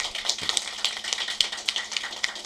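A rapid, irregular run of sharp clicks and snaps, several a second, over a steady low hum in a small room.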